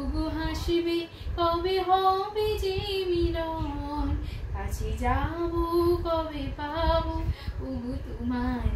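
A young woman singing a Bengali song unaccompanied, holding long wavering notes in phrases, with short breaths about one second and four and a half seconds in.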